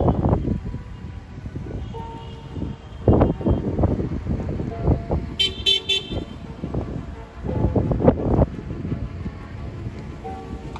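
Car horns honking as a line of cars drives slowly past, with engine and road noise between the honks. About halfway through, a higher-pitched horn gives a few quick short beeps.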